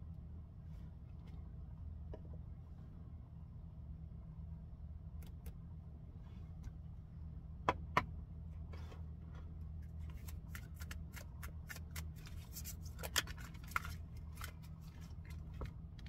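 Oracle cards being shuffled and handled on a tabletop: a dense run of quick flicking and riffling clicks over the last several seconds, after two sharp taps near the middle. A low steady hum sits underneath throughout.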